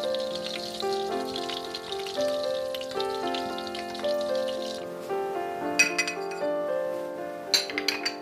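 Breaded zucchini patties sizzling in hot oil in a frying pan for about the first five seconds, under gentle piano background music. Near the end come two sharp clinks of ceramic dishes.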